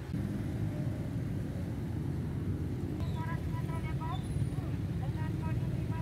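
Street traffic with motorcycle engines running, a steady low rumble. Voices talking join in from about three seconds in.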